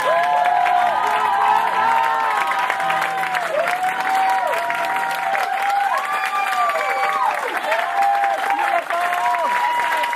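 Audience applauding and cheering, with many overlapping whoops from different voices over the clapping.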